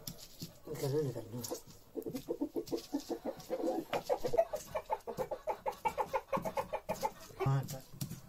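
A hen clucking in a quick run of short calls, about five or six a second, for several seconds.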